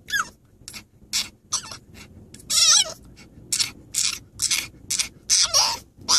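French bulldog whining and squealing in a rapid string of short high-pitched cries, about two a second, with one longer wavering squeal about two and a half seconds in. It is protesting being shut in its pet carrier.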